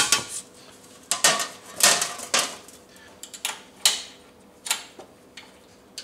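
Seat pan of a Permobil M3 power wheelchair being set down on its metal seat frame: a string of irregular clattering knocks as it is lowered and shuffled into position.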